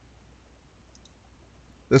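A couple of faint computer mouse clicks about a second in, over low steady background hiss.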